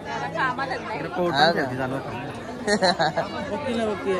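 Several people talking and chattering at once, with no single clear voice.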